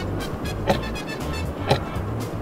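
A countdown-timer sound effect ticking once a second, twice in this stretch, over a low background music bed.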